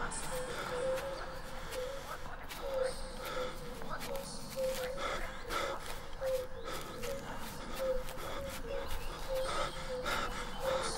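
Breathy, panting-like voice sounds without clear words, in short repeated bursts a few times a second.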